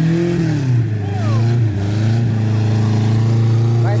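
Chevrolet Chevette's engine revving up and easing back within the first second, then holding a steady rev as the car drives across the grass.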